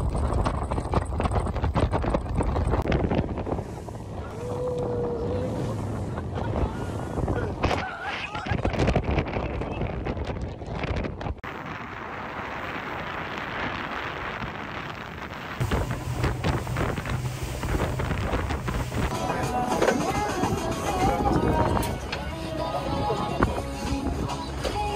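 Wind buffeting the microphone and a motorboat's engine and water noise at sea, in short clips that change abruptly every few seconds, with music underneath.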